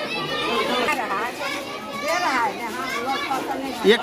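Many children's voices talking and calling out at once, overlapping without a pause.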